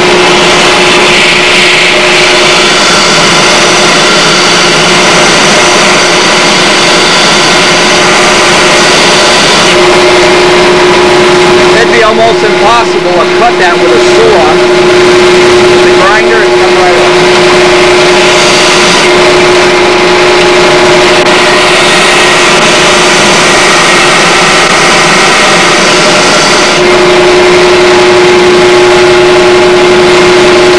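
Bench disc sander running with a loud, steady motor hum while a small wooden part is pressed against the disc and ground to fit; the hum's tone shifts as the part is pressed on and eased off.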